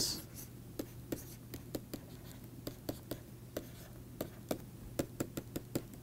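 Stylus writing on a pen tablet as a formula is handwritten: a string of faint, irregular clicks and taps, a few a second, over a steady low hum.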